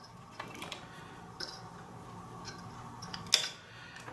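Faint ticks and light rustles of thin 22-gauge solid wire being handled, with one sharper click about three seconds in.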